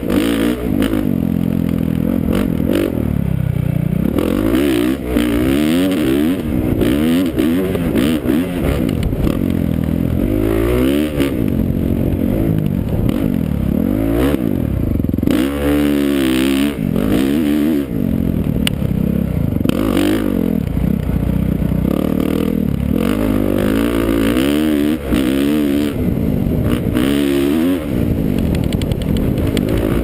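Motocross bike engine revving hard and dropping back over and over as it is ridden around a dirt track, its pitch climbing and falling every second or two through throttle and gear changes.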